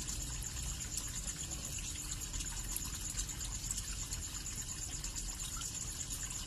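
Steady sound of running water with a low hum beneath it, unchanging throughout.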